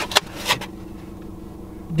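Car engine idling with a steady low hum, heard from inside the cabin, with two brief sharp sounds in the first half second.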